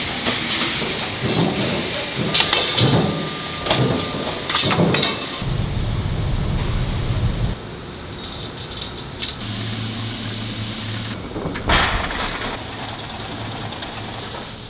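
Metal-rack factory machinery: a quick run of metallic knocks and clanks from press and roll-forming work, then a steady machine hum, and after it a long hiss with a low steady drone under it.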